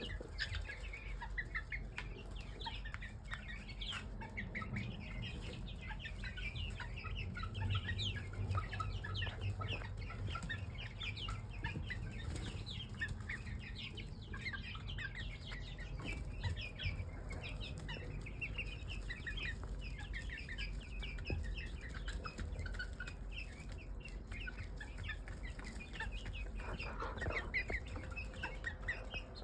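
A flock of young mixed-breed pullets peeping and chirping without a break, many short high calls overlapping, over a low steady hum.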